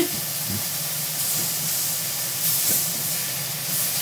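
Meat sizzling in an iron pan, a steady hiss that swells a few times, with a steady low hum underneath. A few soft knocks of a knife on a plastic cutting board.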